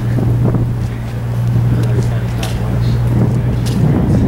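Wind noise on the microphone over a steady low hum, with a few faint clicks.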